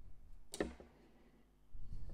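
Needle-nose pliers twisting wrapped wire around a wooden bead: one sharp click about half a second in, with low handling rustle near the end.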